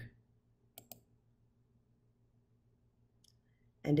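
A computer mouse button clicked twice in quick succession, about a second in, opening the submission panel. Otherwise only a faint steady low hum.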